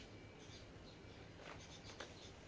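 Near silence: a faint steady low hum with a few soft, short high-pitched ticks.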